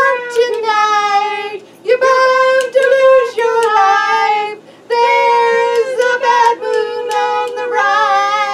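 A woman singing high, held notes with no accompaniment, in short phrases separated by brief breaths, the pitch dipping at the end of several phrases.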